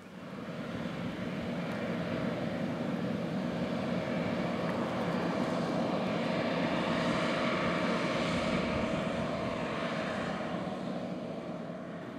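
John Deere R4045 self-propelled sprayer running across the field at working speed, a steady engine drone that swells as the machine comes toward the listener and eases slightly near the end.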